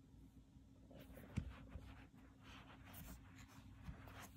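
Faint handling noise as a phone is turned over by hand on carpet: light rustles and soft clicks, with one small knock about a second and a half in, over a faint steady hum.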